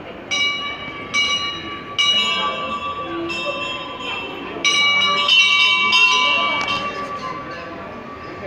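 Brass temple bell struck repeatedly, about seven strikes roughly a second apart, each ringing on and overlapping the next. Voices murmur underneath.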